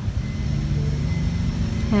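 A motor engine running, heard as a steady low rumble with a hum that settles to an even pitch about half a second in.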